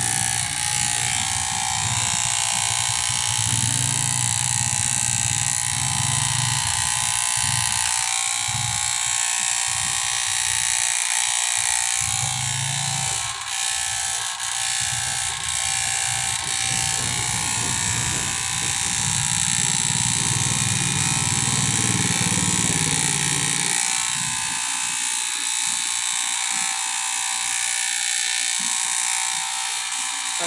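Electric hair clippers buzzing steadily as they cut a man's hair.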